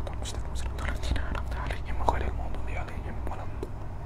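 A man whispering a short Arabic recitation under his breath, over a steady low hum.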